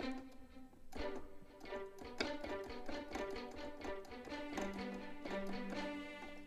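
Sampled string patch in HALion Sonic played from a keyboard: layered strings with a pizzicato layer, giving quick notes with sharp plucked attacks over sustained string tones. A low note enters about four and a half seconds in and is held.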